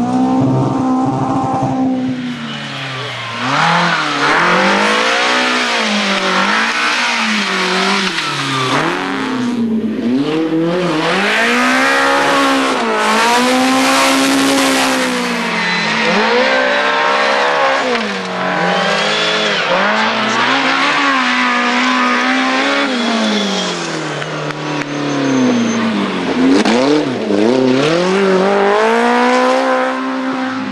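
BMW E30 M3 rally car's S14 four-cylinder engine revving hard, its pitch climbing and falling again and again as the driver accelerates, lifts and changes gear through corners, heard from the roadside as the car passes.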